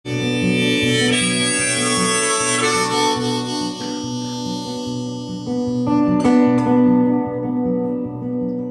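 Harmonica played in a neck rack over strummed acoustic guitar, the instrumental opening of a solo acoustic song. The harmonica holds long, sustained notes, and the guitar strums come forward near the end.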